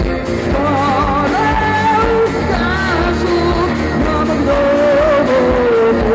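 Live acoustic rock band playing: strummed acoustic guitars and an acoustic bass guitar under a sung melody with vibrato, in a loud club room.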